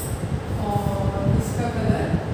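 Dry-erase marker strokes on a whiteboard, short scratchy hisses as a word is written, over a continuous low rumble.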